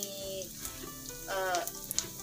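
Batter-coated slices of sticky rice cake (kue keranjang) frying in oil in a pan over medium heat, with a steady sizzle.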